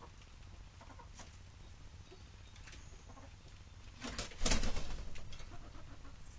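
Hens in a chicken run, with a short loud burst of wing flapping about four seconds in and a few faint clucks around it.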